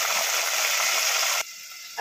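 Hot oil sizzling steadily in a tadka pan as freshly added diced tomatoes fry, cutting off suddenly about a second and a half in.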